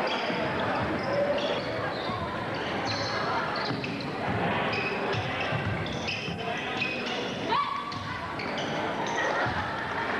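A basketball being dribbled on a hardwood gym floor during play, with short high sneaker squeaks and indistinct voices of players and spectators in a reverberant gym.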